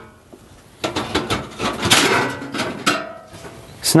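Sheet-metal top panels of an electric cooker being lifted off and handled: a run of metallic clatters and knocks with brief ringing, busiest from about one to two and a half seconds in, with another clank near three seconds.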